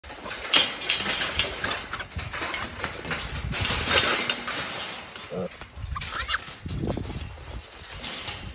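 Wild hog piglets shut in a wire-mesh cage trap, their hooves scrabbling and rattling the wire floor and sides in quick clattering knocks, with a couple of short squeals a little after halfway.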